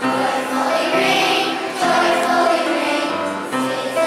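Children's choir singing, the sung notes changing every second or so.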